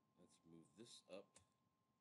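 A quiet, brief mumble of a man's voice lasting about a second, with a single click near its end; otherwise near silence.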